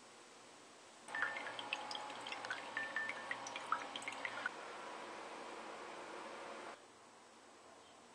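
Filtered water running from the neck of a homemade two-liter bottle water filter into a glass: it starts about a second in with many small drips and splashes, settles into a steadier trickle, and cuts off suddenly near the end.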